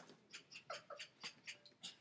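Faint, quick dog-like panting: short breathy puffs, about four a second.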